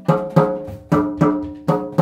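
A 12-inch marching tenor drum with a newly fitted head, tapped with a stick at the edge near each tension rod in turn while a finger deadens the centre, to check the tuning lug by lug. About five short taps, each with a brief pitched ring, the pitch changing from tap to tap: one lug sounds a lot lower than the next, so the head is not yet evenly tensioned.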